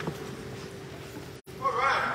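Voices singing, holding a long note, then a wavering vibrato that grows louder near the end. The sound cuts out for a moment about one and a half seconds in.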